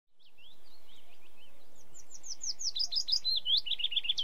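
Songbirds chirping and singing, fading in at the start, with a run of quick downward-sliding notes that grows busier through the second half.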